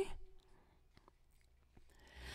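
A woman's sung note dies away in the first moment, then near silence: room tone with a couple of faint ticks.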